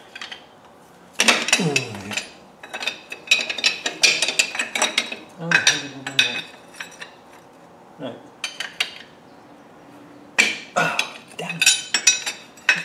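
Steel spanner and bar clinking and knocking against each other and against a drain plug under a Land Rover gearbox, in several short bursts of metallic clicks as the tools are fitted and worked on the plug.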